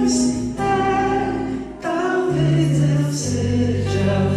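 Male voice singing long held notes over steel-string acoustic guitar accompaniment, in a live performance of a Brazilian song.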